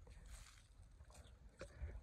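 Near silence with faint rustling of dry straw mulch and crumbly soil as a hand digs into the ground, with a brief click about one and a half seconds in.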